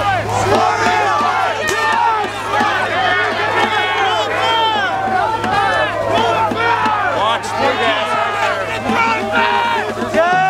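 A large crowd of protesters shouting and calling out at once, many voices overlapping continuously, over a steady low hum.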